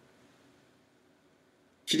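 Near silence: faint room tone during a pause in a man's speech, with his voice coming back in just before the end.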